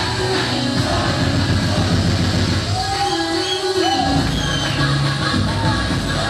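Loud dance music with a steady beat, and the bass thins out briefly about three seconds in.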